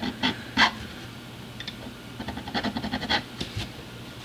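A small file scraping the ends of newly installed guitar fret wire to dress and bevel them: a few single strokes near the start, then a quick run of short strokes in the second half.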